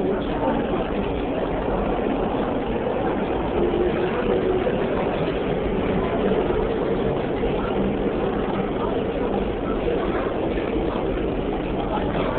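Seoul Subway Line 1 electric train moving past the platform, with a steady running rumble that holds throughout.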